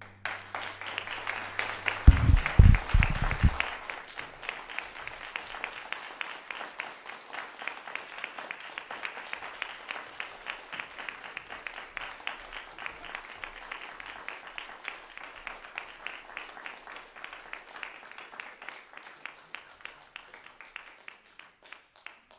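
Audience applauding, the clapping dense at first and thinning out toward the end. A few heavy low thumps sound about two to three and a half seconds in.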